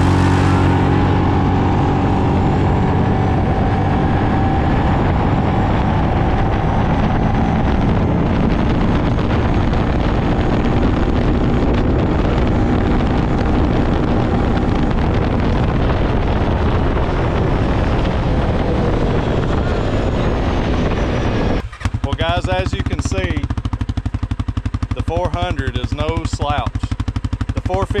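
Utility ATV engines, a Yamaha Kodiak 450 heard from its own seat and a CFMOTO CForce 400 alongside, revving up from a standing start in high gear and then running hard at speed, with wind noise on the mic. After a cut about 22 s in, an ATV engine idles with a rapid, even thump, and voices come in near the end.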